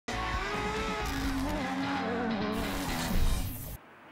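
Intro jingle: music mixed with rally car engine and skidding sounds, which cuts off suddenly just before the end.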